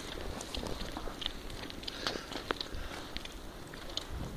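Footsteps through wet, melting snow: an irregular scatter of short clicks and rustles over a low rumble.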